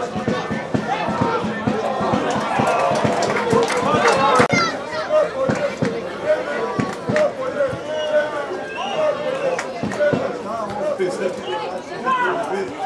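Footballers shouting and calling to one another on the pitch, picked up by the pitchside microphone, with several short thuds, the loudest about four seconds in; near the end a player shouts "Stoy!" ("Hold!").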